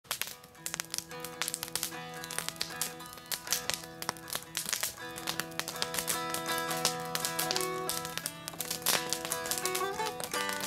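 Mountain dulcimer played with a pick: a steady drone under a picked melody line, with no singing. Sharp, irregular crackles from a campfire sound throughout.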